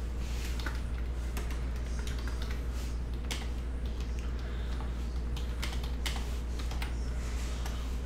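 Typing on a computer keyboard: a run of irregular keystroke clicks, over a steady low hum.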